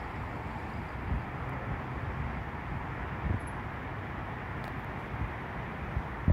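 Steady outdoor background rumble and hiss with no distinct event, broken by a few soft low thumps on the microphone about one and three seconds in.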